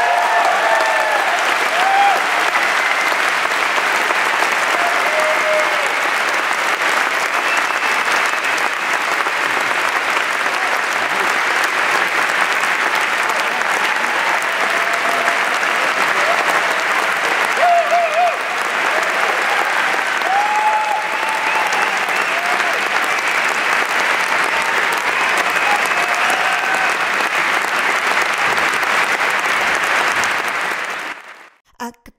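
Large audience applauding steadily, with a few voices calling out over the clapping.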